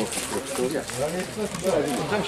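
People talking in Polish close to the microphone, a casual conversation.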